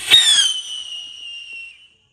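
A whistling firework rocket launched from a hand: a sharp burst at ignition, then a single loud whistle that glides steadily down in pitch for nearly two seconds and fades out as it flies away.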